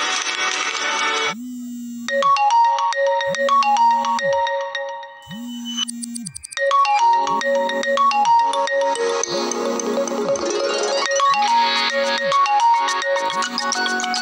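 Smartphone ringtone: an electronic tune with a repeating bell-like melody over bass notes that slide down at their ends. It takes over from background music about a second in, thins out briefly near the middle, then comes back fuller.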